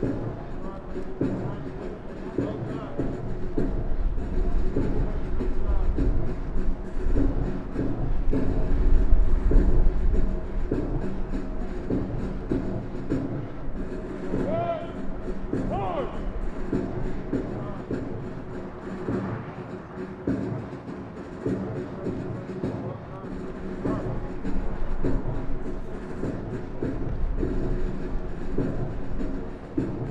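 Outdoor parade-ground sound of a flight of airmen marching in step, with march music and scattered voices. Wind rumbles on the microphone, strongest in the first third.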